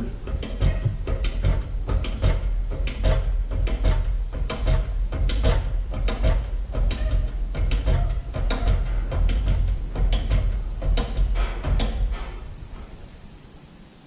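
Hydraulic shop press pumped down, its ram forcing a steel concho blank over a trailer ball into a polyurethane pad to start the dome. A steady low rumble with irregular clicks and knocks, fading out about twelve seconds in as the pumping stops.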